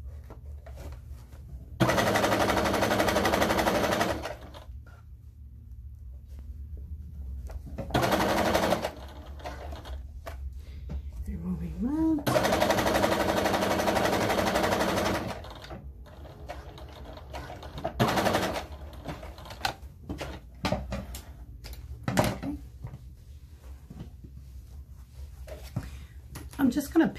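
Electric home sewing machine stitching a zipper to a bag lining in stop-start runs: two longer runs of two to three seconds and two short bursts. Quieter clicks and fabric handling come between the runs and near the end.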